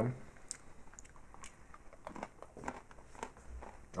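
A person chewing a crunchy cookie, with faint, irregular crunches.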